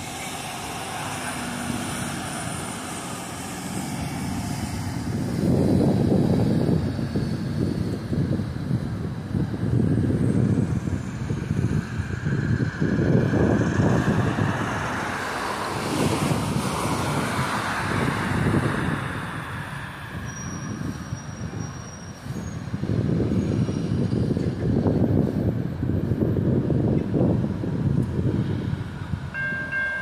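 Two GE ET44AH diesel-electric locomotives, each with a twelve-cylinder GEVO engine, leading a CSX freight train toward the listener from a distance: an uneven low rumble that swells and eases in stretches. The locomotive horn comes in at the very end.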